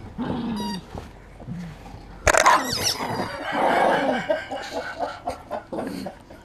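Rubber chicken squeaky toy squawking as a poodle bites and shakes it, with one loud squawk a little over two seconds in, mixed with the dog's low growls.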